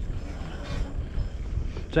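Low, steady rumble of a homemade 1500 W electric bike riding over a dirt forest track. About half a second in there is one brief noise, the kind the rider calls a random noise the bike makes every now and again and has made since day one.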